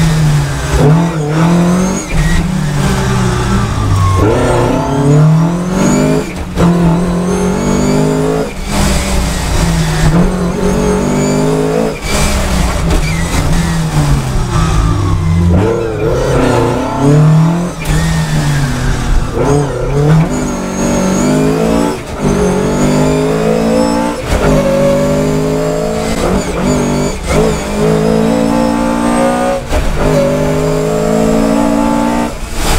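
1976 Fiat 131 Abarth rally car's twin-cam four-cylinder engine on Kugelfischer mechanical fuel injection, heard from inside the cabin, revving hard and rising in pitch over and over, cut by quick gear changes on its dog-box gearbox.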